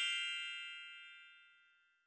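A bright, bell-like chime sound effect ringing out and fading away, gone about a second and a half in.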